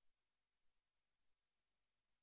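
Near silence: the sound track is all but dead.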